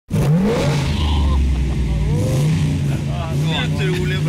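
An SUV's engine running: it revs up briefly near the start, then settles into a steady low rumble.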